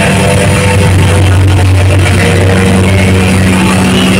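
Live heavy metal band playing loud: distorted electric guitars over bass and a drum kit, with sustained low bass notes that shift in pitch about two and a half seconds in.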